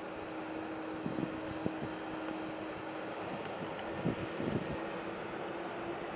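Boeing 747-400F's four jet engines running at low power as it rolls out after landing: a steady rush of engine noise with a steady hum, and a few short thumps about a second in and again around four seconds in.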